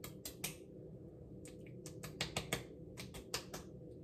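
Palms and fingers patting a liquid skincare product, toner from a pink bottle, onto the face: light, quick pats in three short bursts, about sixteen in all. A low steady room hum lies underneath.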